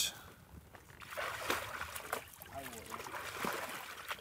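A horse's foreleg pawing and splashing in belly-deep pond water, with irregular splashes and sloshing starting about a second in. Pawing like this is a horse feeling for the bottom, because it cannot judge the water's depth by sight.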